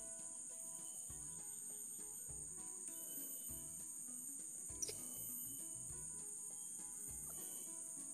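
Steady high-pitched insect chorus, crickets or cicadas, with quiet background music underneath and a single short click about five seconds in.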